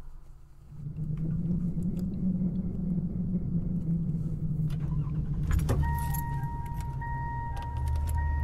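Car sound effects: an engine running with a steady low rumble from about a second in, a jangle of keys about five and a half seconds in, then a car's steady electronic warning chime that holds on.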